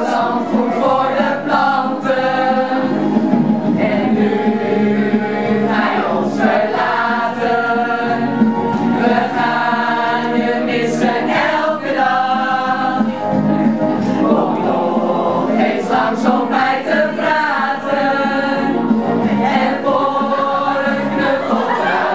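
An amateur group of adults, mostly women, singing a song together in chorus without a break.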